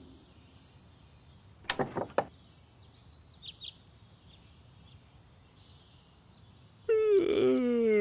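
Quiet outdoor garden ambience with faint bird chirps and a few short knocks about two seconds in, then near the end a person's long, loud yawn that slides steadily down in pitch as he stretches after waking.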